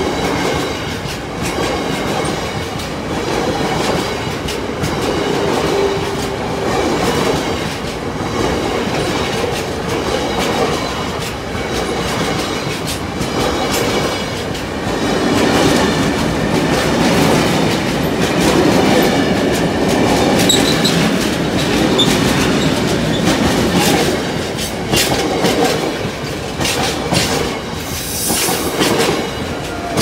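A freight train of tank wagons rolling past close by: a continuous rumble of wheels on rail with repeated clattering clicks, which come thicker and faster near the end.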